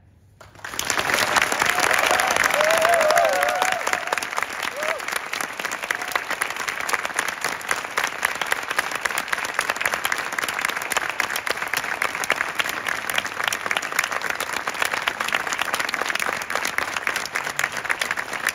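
Audience applauding: dense clapping that starts about a second in, swells loudest over the next few seconds and then carries on steadily.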